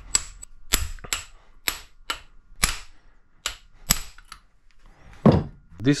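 Hammer blows on a steel sleeve driving a new ball bearing onto the shaft of a forklift motor's rotor: about a dozen sharp metallic taps at an uneven pace, each with a faint ring.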